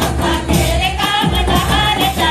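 A group of women singing a tribal folk song together in unison, accompanied by music.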